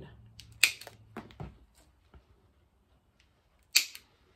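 Rotary leather hole punch pliers clicking as they are worked on a small edge-coated strap connector: a sharp click about half a second in, a few fainter clicks, then another sharp click near the end as the punch closes on the folded piece.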